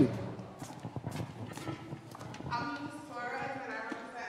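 Footsteps on a hard floor, a few sharp clicks about half a second apart, then faint voices in the background.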